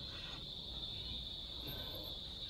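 Insects buzzing in one steady, high-pitched, unbroken drone.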